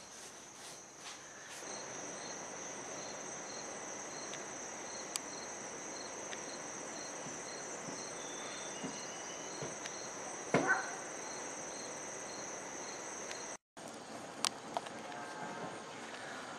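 Insects chirping steadily: a continuous high buzz with a softer regular pulse about twice a second, over a faint hiss. A short louder sound breaks in about ten and a half seconds in, and everything drops out for a moment near the end.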